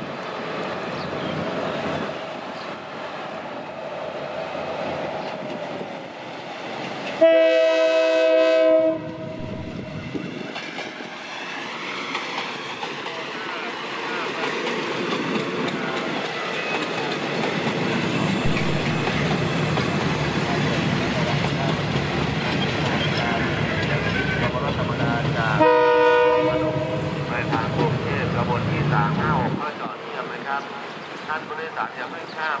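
Diesel railcar of the State Railway of Thailand sounding its horn: one blast of nearly two seconds about seven seconds in, and a shorter one near the end. Between the blasts its engine and wheels run, growing louder as it passes close by.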